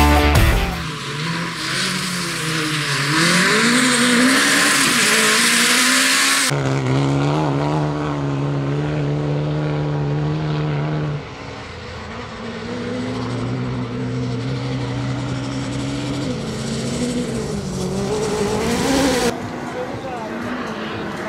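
Peugeot 208 R2 rally car's engine revving hard on a gravel stage, its pitch climbing and dropping with each change of throttle and gear, heard across several abrupt cuts. A few seconds of rock music end just as the engine comes in.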